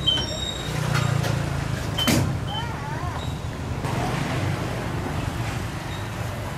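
Short electronic beeps from a ticket turnstile at the start, then a single sharp click about two seconds in. A steady low rumble of road traffic runs underneath.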